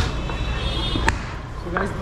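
Two sharp slaps about a second apart as roti dough is pressed onto the inner wall of a clay tandoor, over eatery chatter and a steady low hum.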